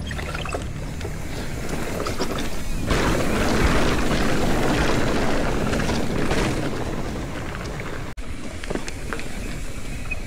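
Mountain bike descending, its tyres rolling over rock and dirt under a steady rush of wind on the camera microphone, growing louder about three seconds in as the bike picks up speed.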